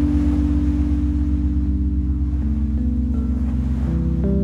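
Lo-fi chill music: held bass and chord tones under a hissing, wind-like noise swell that fades over the first couple of seconds, with only a few sparse melody notes.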